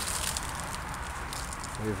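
Steady outdoor background hiss with faint crackles, and a man's voice starting just before the end.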